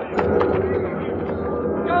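Radio sound effect of a cattle stampede: a dense, loud din of running steers that starts suddenly just after the start, with two sharp knocks in the first half second.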